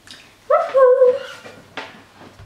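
A short, high, voice-like sound in two steps lasting under a second, then a sharp click near the end.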